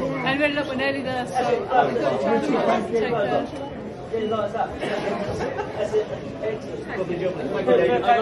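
Many voices talking over one another: crowd chatter with no single clear speaker.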